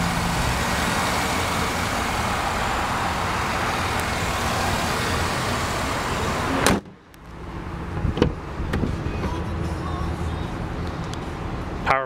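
Chevrolet Vortec 5.3-litre V8 idling steadily under an open hood. About two-thirds of the way through, the hood shuts with a sharp bang, and the idle drops at once to a quieter, muffled sound. A few clicks follow.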